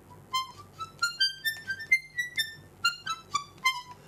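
Palm-sized miniature garmon (Russian button accordion) playing a quick run of short, high single notes, rising step by step through a whole octave and then coming back down.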